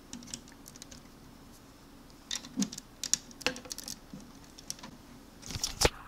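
Lego plastic pieces clicking and tapping as they are handled and turned, in irregular small clicks with a louder cluster near the end.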